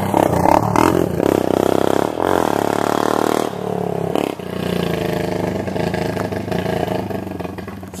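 Quad ATV engine passing close by, its pitch rising and falling as the rider revs and eases off, loudest early on and fading away near the end.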